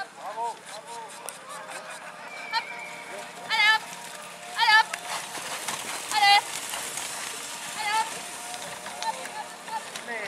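Four loud, high calls with a rapidly wavering pitch, spread over about four seconds, the two in the middle the loudest: a voice urging on a pair of ponies pulling a sled.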